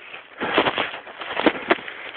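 Close handling noise on the camera's microphone: rustling and scraping that starts about half a second in, with two sharp knocks near the end.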